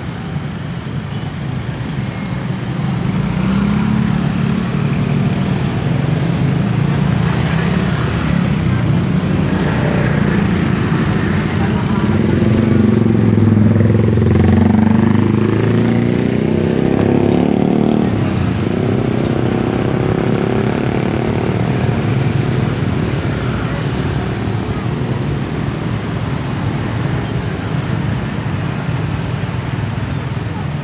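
Busy street traffic: motorcycles and cars passing close by in a continuous stream, the engine noise swelling in the middle.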